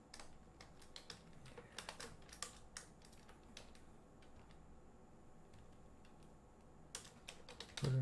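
Faint typing on a computer keyboard: scattered keystrokes through the first few seconds, a lull, then a quick run of keystrokes near the end.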